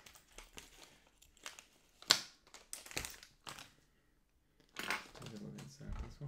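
A plastic antistatic bag crinkling as it is snipped open with scissors and handled, in a few short bursts; the loudest comes about two seconds in.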